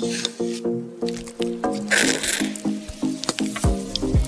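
Background music: a bouncy tune of short, evenly paced plucked notes, with deep bass notes coming in near the end. A short squishy hiss sounds about two seconds in.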